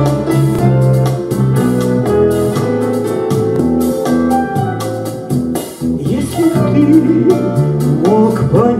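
Instrumental introduction of a backing track for a song: a steady beat with bass and sustained chords. A wavering melody line comes in about six seconds in.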